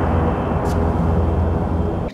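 A film's sound effect: a steady, deep rumbling drone with a hiss over it.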